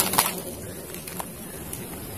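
Plastic toy guns handled: two sharp clicks right at the start, then a quiet steady background with a couple of faint ticks.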